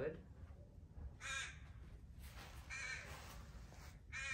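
A crow cawing twice, about a second and a half apart.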